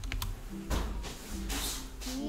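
Computer keyboard typing: a few sharp key clicks early on, followed by two short hissing bursts of noise.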